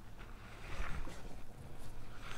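Soft rustling and handling noises as a gloved hand moves objects on the covered work table, loudest about a second in, over a low rumble.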